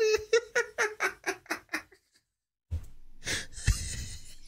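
A man laughing hard in quick "ha-ha-ha" pulses, about six a second, that die away about two seconds in. After a brief dead silence a low steady hiss comes in, with a couple of soft thumps.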